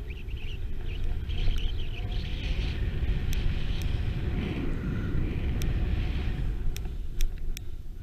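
Wind rumbling on an action camera's microphone during a fast run down a snow slope, with the hiss and scrape of the rider's edges on the snow through the middle and a few sharp ticks.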